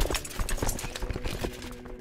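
Horse hooves clip-clopping as a sound effect, a quick run of hoof strikes, over quiet background music holding steady notes.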